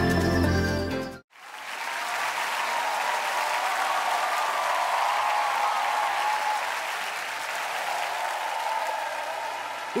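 A short burst of the show's title-theme music cuts off suddenly about a second in, followed by a studio audience applauding steadily.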